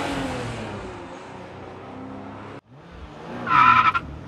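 Car driving noise that fades away and breaks off suddenly about two and a half seconds in, then a short, loud, high-pitched squeal near the end.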